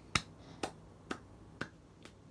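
Four finger snaps in an even rhythm, about two a second, the first the loudest.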